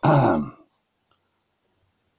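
A man clearing his throat once, a short voiced sound lasting about half a second.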